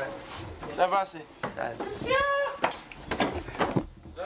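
People's voices in short calls and snatches of talk, with a few sharp knocks or clicks in between.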